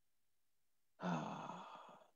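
A man's voiced sigh, a breathy drawn-out vocal sound that starts about a second in and fades away.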